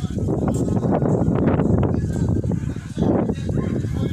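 Wind buffeting the phone's microphone: a loud, gusting low rumble that rises and falls.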